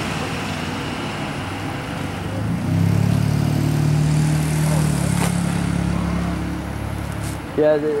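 Motor vehicle engine running close by: a steady low hum swells up about two and a half seconds in and fades near the end, over a background of street traffic hiss.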